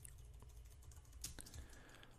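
Faint computer keyboard typing: a few irregular key clicks over a low background hum.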